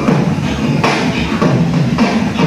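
Beatboxing through a microphone and PA speakers: a steady beat of sharp drum-like hits a little under a second apart over low sustained tones.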